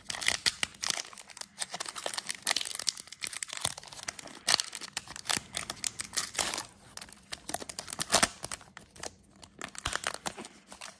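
Foil wrapper of a Pokémon card booster pack crinkling and tearing as it is ripped open by hand, in irregular crackly bursts.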